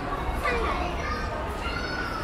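Shopping-mall walk-through ambience: voices of people talking nearby over a steady low hum.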